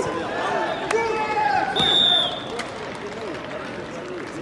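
Arena crowd hubbub: many overlapping voices with no clear words. There is a sharp knock about a second in and a short high tone about two seconds in, after which the sound grows a little quieter.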